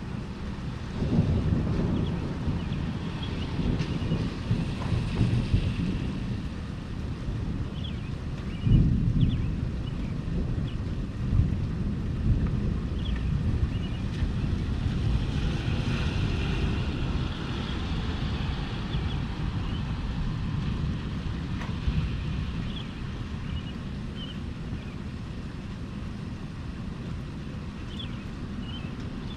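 Rolling thunder rumbling long and low, swelling sharply about a second in and again near nine seconds, then easing off after about twenty seconds, over a steady wash of rain.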